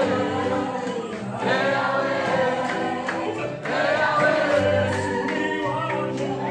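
Live gospel worship music: a band with a lead singer and a group of voices singing together in phrases over sustained instrumental chords.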